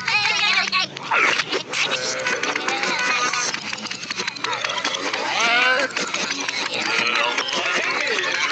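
Cartoon soundtrack played backwards: high-pitched, wordless character voices with rising and falling pitch, mixed with quick clicks and knocks of sound effects.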